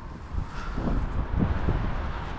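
Wind buffeting a body-worn camera's microphone: a steady low rumble with a few soft gusty thumps.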